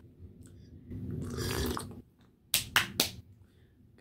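A sip of coffee slurped from a mug for about a second, followed by three quick, sharp clicks.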